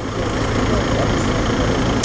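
Steady street noise: a motor vehicle engine idling, a low steady hum under an even hiss of traffic.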